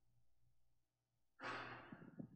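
Near silence, then about one and a half seconds in a single breathy exhale close to the microphone, like a sigh, loudest at the start and fading over about half a second.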